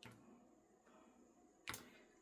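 Near silence: room tone with two faint clicks, the second and louder one shortly before the end.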